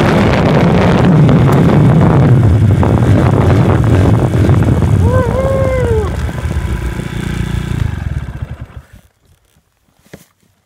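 Honda motocross dirt bike engine running under way, with wind on the handlebar-mounted phone's microphone. The sound drops about six seconds in and fades out at about nine seconds.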